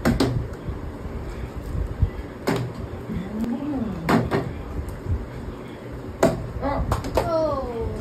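A part-filled plastic drink bottle flipped and landing on a tabletop: several sharp knocks, a couple of seconds apart. Near the end a voice gives a falling "oh"-like exclamation.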